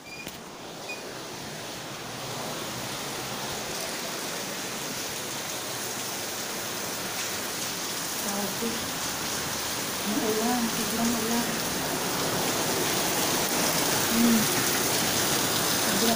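Heavy rain falling steadily, a continuous hiss that grows gradually louder.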